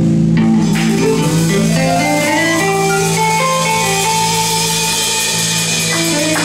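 Live blues band playing an instrumental passage: electric guitar and Kawai MP4 stage keyboard over bass guitar and drums, with held chords and a melodic line stepping upward in the first few seconds.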